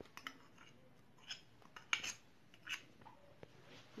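A handful of faint, short clinks and scrapes of kitchen utensils, spread across a few seconds.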